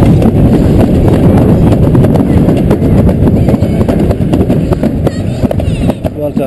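Toboggan sled running down a stainless-steel trough track: a loud, continuous rumble of the sled on the metal with many small clicks and knocks over the track. It eases a little near the end as the sled slows into the station.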